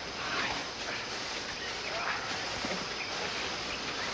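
Steady outdoor background hiss, with faint, indistinct voices now and then.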